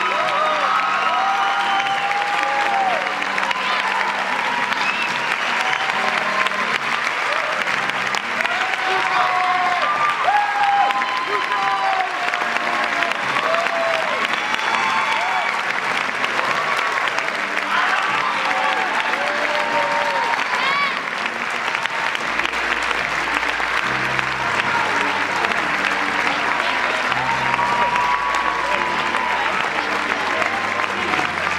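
A large audience applauding steadily, with scattered voices calling out over the clapping. Music with low bass notes comes in under the applause about two-thirds of the way through.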